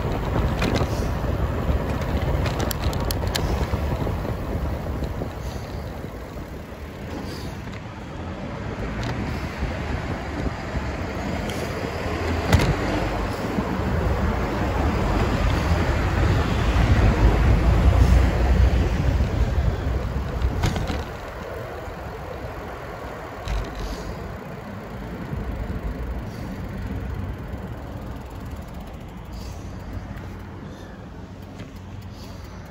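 Riding noise from a moving bicycle: wind rumbling on the microphone, mixed with the sound of cars passing on the street. It is loudest about two-thirds of the way through, then turns quieter, with a few sharp clicks along the way.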